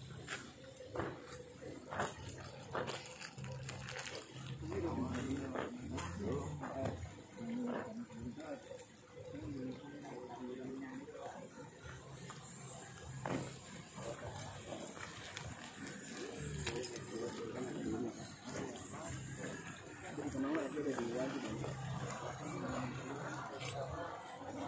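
Indistinct background talk from people nearby, faint and coming and going, with no clear words. A faint high steady whine runs through the second half.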